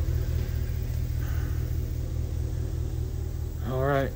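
A steady low rumble with little above it. A man's voice begins near the end.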